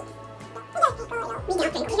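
Canola oil glugging in irregular pulses as it is poured from its jug into an empty plastic water bottle. Background music plays, with a child's brief vocal sounds in the second half.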